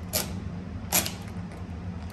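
Utility knife blade slicing through grasscloth wallpaper along a steel straightedge: two short scratchy cuts about three quarters of a second apart, over a steady low hum.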